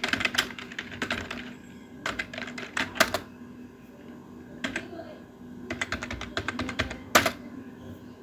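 Typing on a computer keyboard: short runs of key clicks separated by pauses, with a few single, sharper key strokes.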